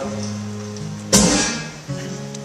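Acoustic guitar played solo between sung lines: a chord rings and fades, then a fresh strum about a second in rings out.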